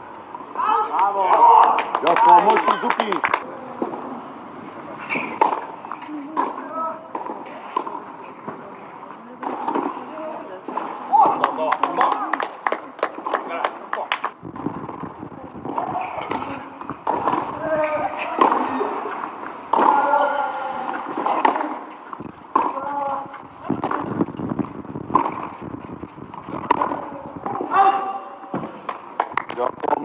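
Tennis balls struck by racquets in rallies on a clay court: sharp hits, some in quick runs, over background voices.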